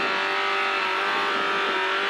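Renault Clio rally car's engine running hard at steady revs, heard from inside the cabin, its pitch holding level for the whole two seconds.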